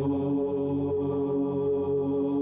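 Background music of a low, steady chanted drone, like a held "Om", that does not break or change pitch.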